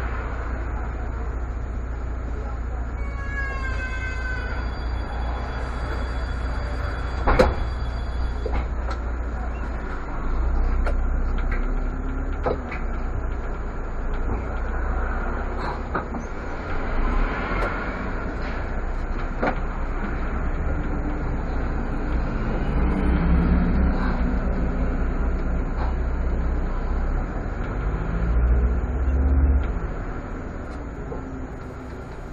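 Irisbus Citelis CNG city bus's engine and road rumble heard from the driver's cab as it stands and then pulls away and drives on. A short falling chime sounds about three to four seconds in, and a sharp click about seven seconds in.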